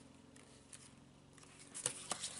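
Near silence: room tone, with a couple of faint short clicks near the end.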